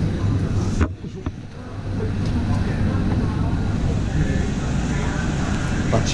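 A steady low hum with faint voices in the background, dipping briefly after a click about a second in.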